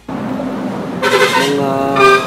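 A steady hiss of open-air background noise, then about a second in a man's voice starts with a long drawn-out vowel.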